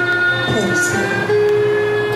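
Haegeum (Korean two-string bowed fiddle) playing long held notes, with a downward slide in pitch about half a second in, then a steady high note.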